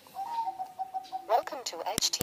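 A Radiomaster Zorro radio transmitter sounding a steady power-on beep of about a second while its power button is held, as it boots into EdgeTX. A short warbling, voice-like sound follows, and then two sharp clicks near the end.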